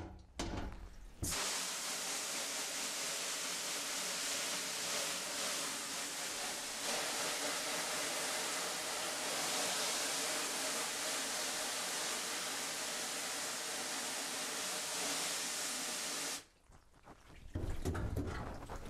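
Garden hose spray nozzle spraying water onto a silkscreen in a metal washout booth, washing out the unexposed photo emulsion to reveal the design. The steady spray starts about a second in and cuts off sharply about a second and a half before the end.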